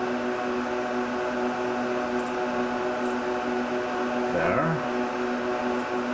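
IBM/Lenovo System x3650 M4 rack server running, its cooling fans giving a steady hum of several even tones over a hiss.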